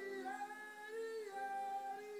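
Live New Orleans jazz band holding sustained notes in harmony, changing chord about halfway through.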